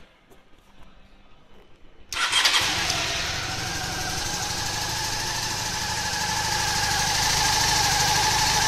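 Cruiser motorcycle's air-cooled engine on a cold start: it catches suddenly about two seconds in, surges briefly, then settles into a steady idle that grows slightly louder.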